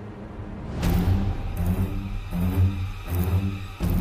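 Dramatic background score: a quiet low drone, then a sudden loud swell about a second in, followed by a pulsing low beat.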